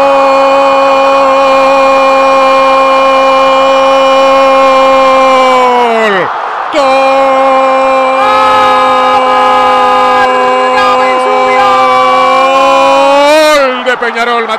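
Radio football commentator's long held goal cry, '¡Gooool!', sustained on one steady note for about six seconds. The pitch drops away, there is a quick breath, and a second long held cry follows that wavers at its end.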